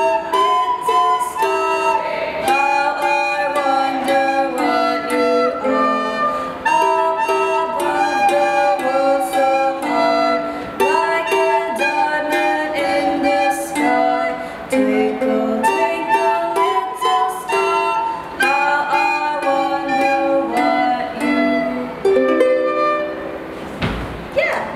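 A ukulele strummed in a steady rhythm, with a soprano recorder and a girl's voice singing the melody over it; the song ends near the close.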